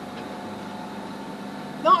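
Sailing yacht's inboard diesel engine running steadily under way, a constant drone over an even hiss. A woman says one word near the end.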